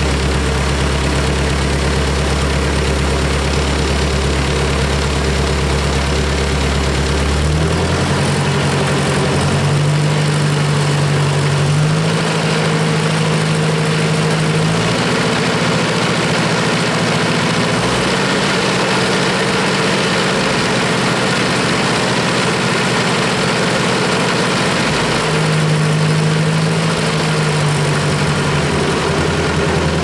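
1962 Ford 801 Powermaster tractor's four-cylinder engine running, first at a steady idle, then brought up to a faster speed in steps from about eight seconds in, and eased back down near the end.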